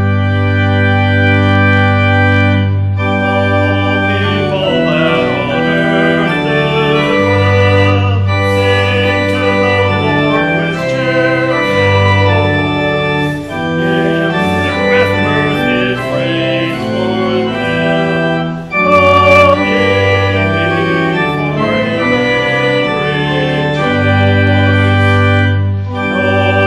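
Church organ playing slow, sustained chords over long-held bass notes, the harmony shifting every second or two.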